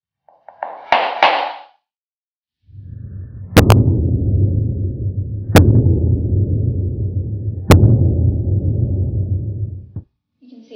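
A small hammer beating the hard box of a Russian Pointe shoe to soften it: a few light knocks about a second in, then loud, dense low thudding with a sharp crack every two seconds or so.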